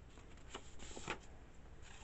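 Scissors snipping through a sheet of paper, a few faint cuts while trimming off its edge.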